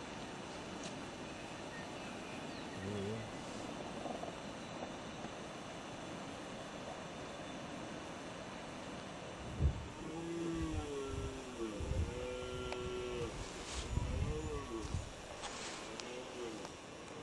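Red stag roaring during the rut: a series of pitched roars in the second half, with a sharp knock just before them, over a steady background hiss.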